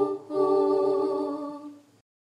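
Background music: a voice holds one long, steady note after a brief break, fading out near the end.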